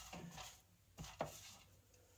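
Near silence: quiet room tone with three faint taps, one at the start and two close together about a second in.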